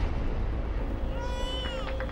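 Title-sequence sound design: a steady low rumbling drone, with a short high cry about a second in that rises and then falls in pitch.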